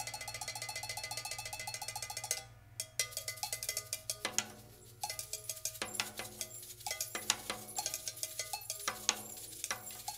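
Free-jazz improvisation on ringing metal percussion from the drum kit: a fast, even run of strikes for about two seconds, then it drops away to sparse, irregular hits that ring briefly.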